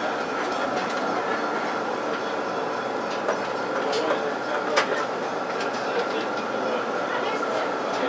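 Melbourne tram running along its rails: a steady rolling rumble of wheels on track with a steady high hum, and a couple of sharp clicks about halfway through.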